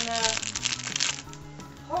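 Plastic cake packaging crinkling and rustling as it is handled for about the first second, over steady background music.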